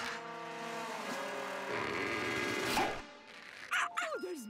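Cartoon squeal sound effect: a long, high, squeaky screech with several steady tones at first, growing rougher and wavering before it stops about three seconds in. A brief sharp sound follows near the end.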